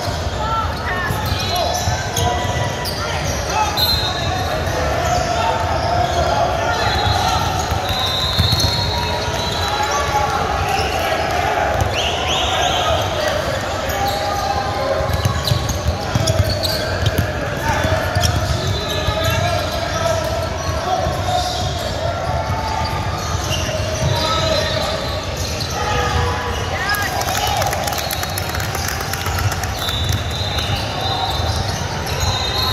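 A basketball being dribbled and sneakers squeaking on a hardwood gym floor during a game, with indistinct voices of players and spectators throughout, all echoing in a large gym.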